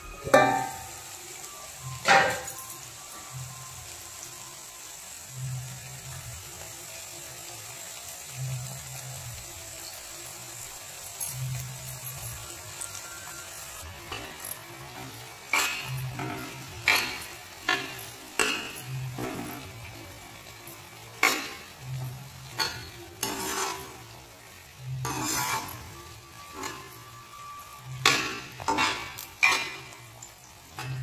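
A spatula scraping and knocking in a pan as brinjal curry is stirred, over a faint steady sizzle of frying. There are two sharp knocks near the start, a quieter stretch, then frequent scrapes and clinks through the second half.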